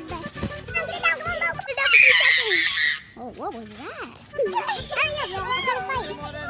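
Children's voices, with a loud shriek about two seconds in and a cry of "ay, ay, ay" a little later, over background music.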